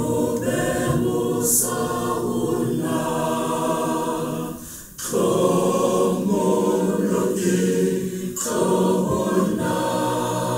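A congregation singing a Sesotho hymn unaccompanied, in long held phrases with a brief pause for breath about five seconds in and again near the end.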